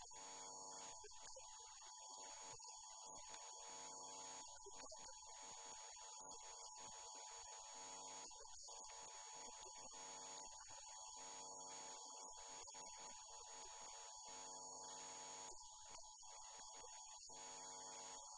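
Faint, steady electrical hum with a thin, high-pitched whine above it.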